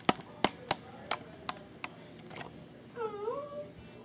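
A series of about seven sharp clicks, irregularly spaced, over the first two and a half seconds, followed near the end by one short cat meow that dips and then rises in pitch.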